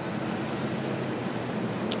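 Steady background noise: an even hiss with a faint low hum and no distinct sounds.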